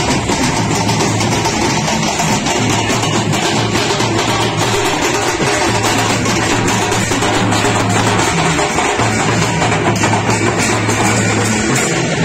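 A procession drum band: many large drums beaten fast with sticks, loud and dense throughout, with a steady low tone underneath that drops out briefly a few times.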